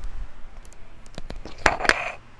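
Small hard objects being picked up and handled, giving a few separate clicks and then a louder clatter near the end.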